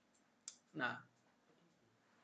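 A single short, sharp click about half a second in, followed at once by a man saying "nah".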